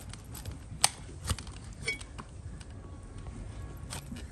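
A broad flat hoof-trimming blade shaving horn from a donkey's hoof resting on a wooden block: a few separate sharp cuts and scrapes, the loudest about a second in.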